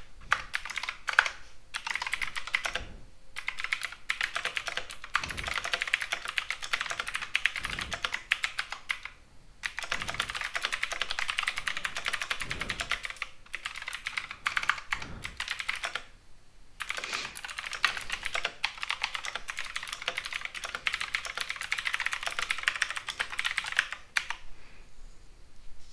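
Typing on a computer keyboard: a fast, continuous run of key clicks, broken by a few brief pauses.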